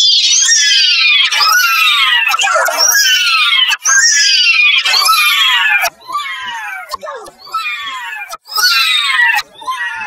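A character's voice shouting "no", pitched very high and distorted by audio effects, repeated over and over. Each cry slides down in pitch, about one or two a second. The cries turn quieter a little after halfway.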